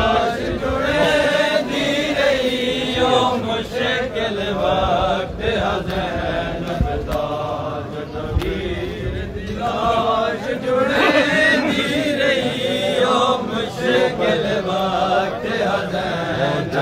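A crowd of men chanting a Punjabi noha together in a lamenting melody, with the thuds of matam, hands beating on chests, striking a steady beat about once a second.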